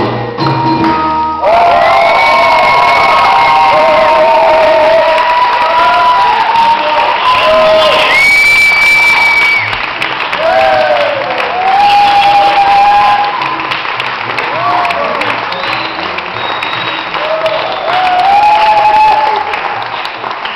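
Audience applauding, cheering and whistling, loud from about a second and a half in and swelling in waves, as the salsa music ends.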